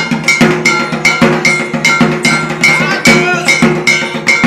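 Percussion music: a metal bell or gong struck in a fast, even beat of about four strikes a second, each strike ringing briefly, over drums.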